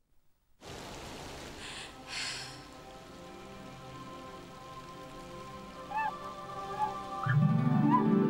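Sound of steady rain with soft music under it, starting after a brief silence; a fuller, louder tune with low notes comes in near the end.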